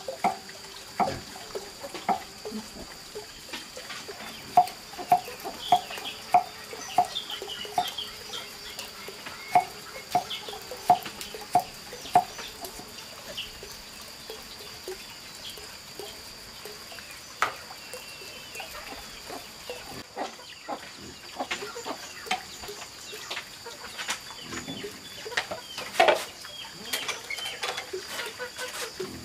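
Kitchen knife chopping on a thick round wooden chopping board: a steady run of knocks, about two a second, for the first dozen seconds, then slower, scattered taps.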